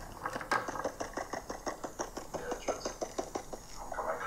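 A rapid run of light, evenly spaced clicks, about six a second, without a break.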